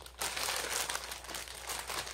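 Plastic packaging of instant ramen packs crinkling and rustling as they are handled, in quick irregular crackles that start just after a brief lull.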